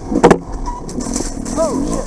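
Dirt bike engine running under the rider on a rough sandy trail, with two sharp knocks about a quarter second in and a quick rise and fall in engine pitch near the end.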